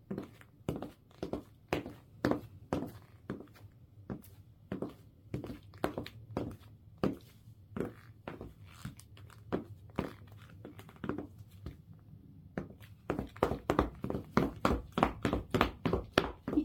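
High-heel footsteps of platform sandals with cork-covered heels and soles on a wooden floor: a steady run of sharp knocks, about two a second, that grow louder and closer together in the last few seconds.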